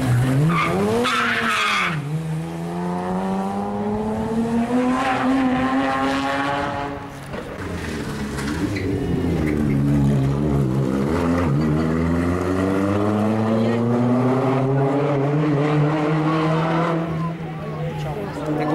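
Rally cars taking a tight corner one after the other. Each engine's pitch drops as the car slows for the bend, then climbs steadily and loudly as it accelerates hard away, twice over.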